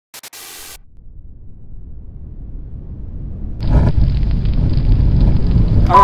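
Cinematic intro sound effect: a brief hiss, then a low rumble that swells for about three seconds and breaks into a loud boom with a rumbling tail, about three and a half seconds in.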